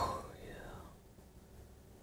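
A man whispering softly, close to the microphone, right after a sharp, loud sound at the very start.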